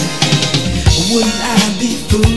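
Soul-funk song playing with its bass guitar track removed: drum kit keeping the beat under guitar and keyboard parts, between sung lines.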